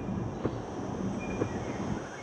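Steady low road and engine rumble inside a moving car's cabin, with a few faint knocks about a second apart.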